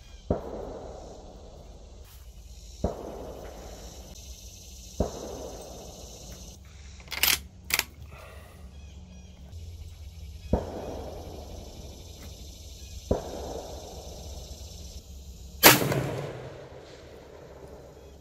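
Several fainter gunshots echo across the range, and about three-quarters of the way through a much louder, close 6.5 mm rifle shot rings out with a long echo. This close shot is fired through two chronographs for a velocity reading.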